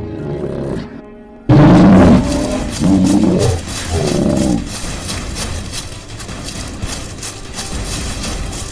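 Horror music, then about a second and a half in a sudden loud creature roar sound effect: three long roars with bending pitch over about three seconds. A pulsing beat of music runs on after them.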